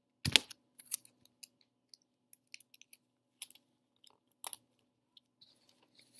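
Paper bag craft being handled on a tabletop: a sharp knock about a third of a second in, then scattered light clicks and paper rustles.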